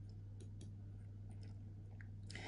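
Quiet room tone with a steady low hum and a few faint, light clicks.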